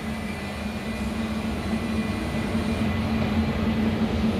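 Steady low machinery hum with a faint high whine above it, the running noise of an industrial cleaning line and its plant.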